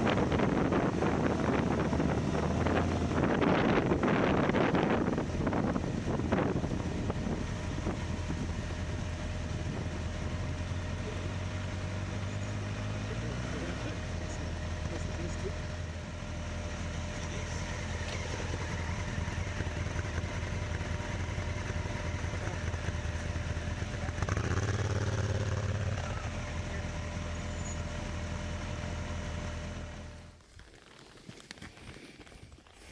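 Motorcycle engines idling with a steady low hum. The first few seconds carry a louder rush of wind or movement noise. Another bike's engine rises about halfway through and grows louder again near the end as bikes ride up close.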